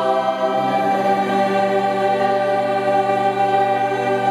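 Children's choir singing, holding long sustained notes in a chord.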